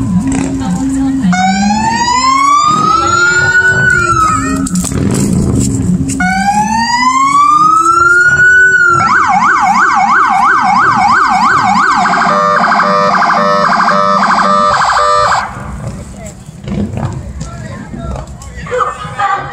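Electronic police car siren: two slow rising wails, then a fast yelp, then a rapid warbling pattern, cutting off about fifteen seconds in.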